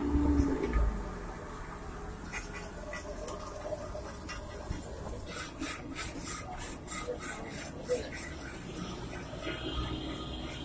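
Metal spatula scraping and knocking on a large flat iron griddle. There is a low thump in the first second, and from about midway a run of quick rasping scrapes comes at about three a second.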